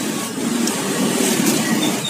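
Steady rumble of passing street traffic.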